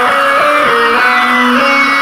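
Metal song passage with an electric guitar playing a line of bending, sliding notes, and no drums or bass underneath.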